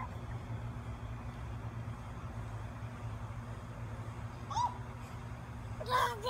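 A toddler's short high-pitched squeal about four and a half seconds in, then a longer, wavering babbling squeal near the end, over a steady low background rumble.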